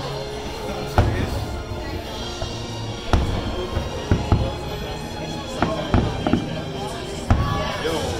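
Aerial fireworks shells bursting: about eight sharp booms at uneven intervals, the loudest about a second in, over crowd chatter.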